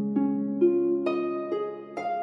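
Background harp music: slow plucked notes about twice a second, each left ringing under the next.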